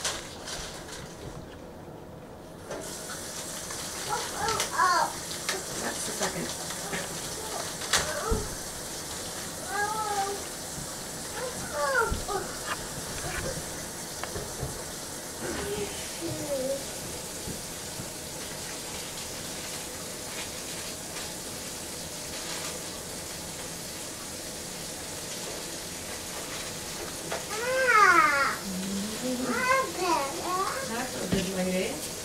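Short vocal calls that glide up and down in pitch, a few seconds apart, the loudest near the end, with a single sharp click partway through.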